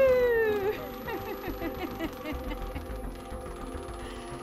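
A woman's long "woo!" falling in pitch, trailing off within the first second, then a spinning prize wheel's pointer clicking rapidly against its pegs, the clicks spacing out as the wheel slows to a stop.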